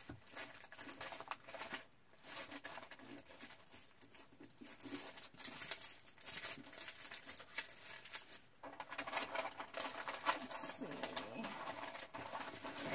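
Rustling and crinkling of scrapbooking supply packets being rummaged through by hand, with many small irregular clicks and taps, busier near the end.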